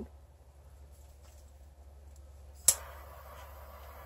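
Quiet for over two seconds, then a sharp click and a steady hiss: a small handheld torch being lit and burning, to pop bubbles in the acrylic pour.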